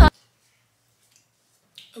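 Background music cuts off abruptly at an edit, leaving near silence for about a second and a half, then a woman begins speaking near the end.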